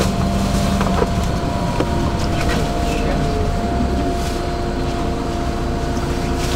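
Inside a moving LiAZ-5292.65 city bus: steady rumble of the engine and running gear with a thin steady whine, and a few light knocks and rattles from the body.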